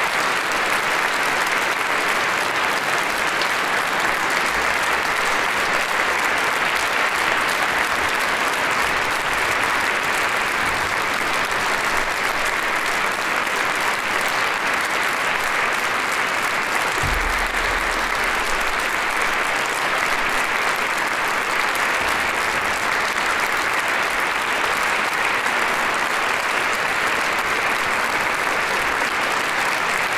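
A large concert audience applauding steadily at the end of an orchestral piece. A brief low thump sounds about halfway through.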